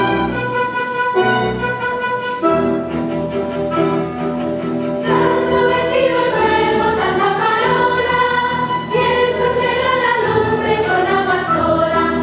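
Live orchestra and chorus performing zarzuela music. The orchestra holds steady chords, and the chorus comes in singing about halfway through, a little louder.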